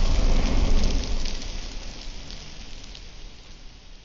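Intro logo sound effect: a deep rumble with a crackling hiss over it, loudest about a second in and then slowly fading away.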